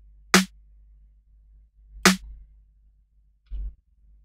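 Soloed electronic snare drum sample from a software drum sampler, run through a frequency shifter effect, hitting twice about 1.7 s apart, each hit a sharp crack with a short low ring. A quieter short knock follows near the end.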